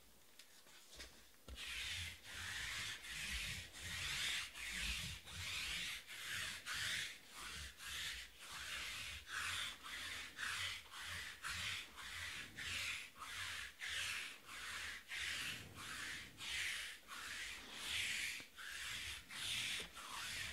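Adhesive lint roller rolled back and forth over a table mat, a scratchy, sticky rasp with each stroke, about one and a half strokes a second. It starts about a second and a half in.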